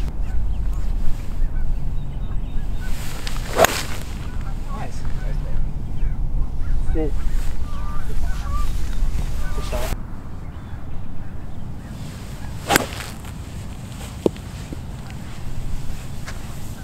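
A golf club strikes a ball off fairway turf twice, one sharp click a few seconds in and another about nine seconds later. Wind rumbles on the microphone through the first part.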